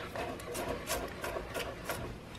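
Hand-forged Serbian chef's knife rocking through diced onion on a wooden cutting board: a quick run of light taps and scrapes, about four a second.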